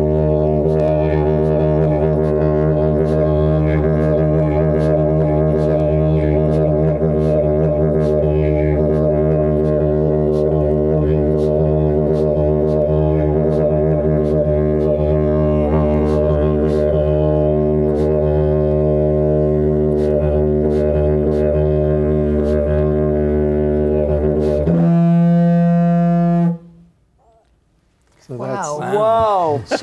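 Didgeridoo played as one unbroken low drone sustained by circular breathing, its overtones shifting while the base pitch holds steady. Near the end it jumps to a higher, piercing overblown "trumpet" note for a couple of seconds, then stops.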